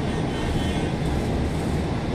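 Steady engine and road rumble of a moving bus, heard from inside the cabin.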